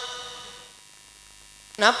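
Steady electrical hum from the microphone and sound system during a pause in a man's speech. His voice echoes away at the start, and a short word comes in near the end.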